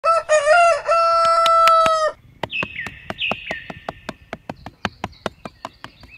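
A rooster crowing: a few short notes, then one long held note that cuts off about two seconds in. After it comes a fast, even ticking of about five ticks a second, with faint chirps.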